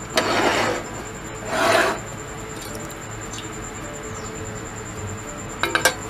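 Two short scraping rubs of a cake pan against a glass plate as the cake is turned out, about a second apart, then a few quick clinks near the end.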